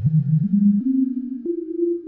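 Experimental electronic music: a single sustained synthesizer tone stepping upward in pitch, jumping to a higher note three times.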